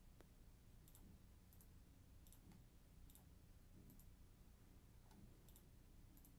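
Near silence with faint computer mouse clicks, single and double, coming roughly once a second.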